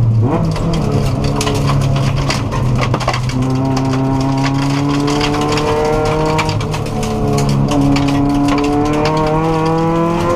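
Subaru WRX rally car's turbocharged flat-four engine heard from inside the cabin, the revs climbing hard and then dropping at a gear change before climbing again. Gravel and stones clatter against the underside throughout.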